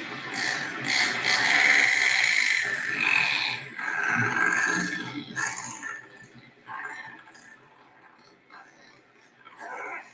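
Recorded razorbill calls played back. Loud and rasping for about the first six seconds, then a few fainter, shorter calls.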